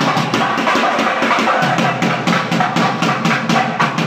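Festival procession drumming: a barrel drum beaten fast and steadily with a stick, several strokes a second, with other festival music around it.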